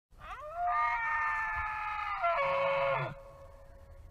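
Bull elk bugling: one long call that glides up into a high, steady whistle, then steps down in pitch with a low rough tone beneath it and cuts off about three seconds in.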